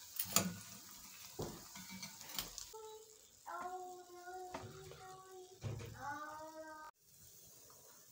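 Faint sizzling of hot oil with light clicks and knocks of a metal slotted spoon as fried samosas are lifted from the pan. From about three seconds in, a faint voice holds a few long notes, and the sound cuts off abruptly near the end.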